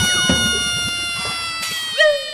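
An edited-in comedy sound effect: one long drawn-out tone, rich in overtones, sliding slowly down in pitch and fading. Right at the end a short new tone cuts in and drops in pitch.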